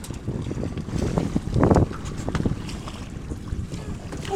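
Wind buffeting the microphone over water moving around a small aluminium boat, a steady low rumble with one brief louder burst of noise about a second and a half in.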